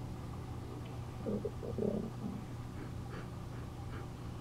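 Quiet room tone with a steady low hum, broken by a few brief, soft low murmurs between about one and two and a half seconds in.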